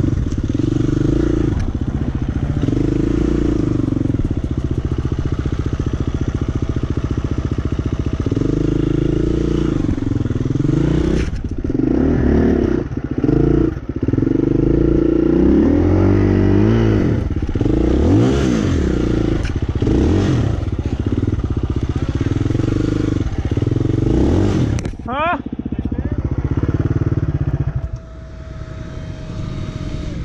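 KTM enduro dirt bike engine working under load on a steep rocky climb, its revs rising and falling in bursts with the throttle. The engine drops back to a lower, quieter note near the end.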